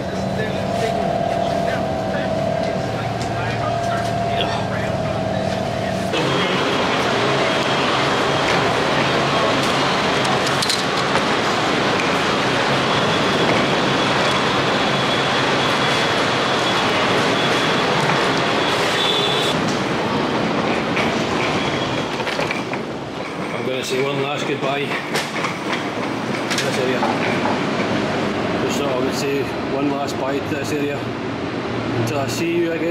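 Steady engine and air-conditioning hum inside a shuttle bus for the first few seconds. Then, from about six seconds in, a hard-shell suitcase's wheels roll over a concrete floor, a continuous rolling noise that gets more uneven near the end.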